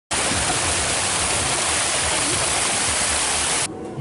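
Water pouring and splashing onto stones, a steady loud rush that cuts off abruptly just before the end.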